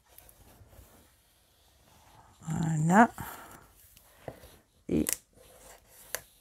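Paper-covered cardboard album cover being smoothed with a bone folder and folded: faint rubbing and handling, then a short sharp rustle of the card about five seconds in. A brief vocal sound with rising pitch comes in between and is the loudest thing.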